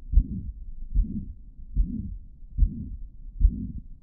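Heart sounds heard through a stethoscope at the cardiac apex: a regular heartbeat, about 75 beats a minute, with a steady murmur running between the beats. This is the pansystolic murmur of mitral regurgitation.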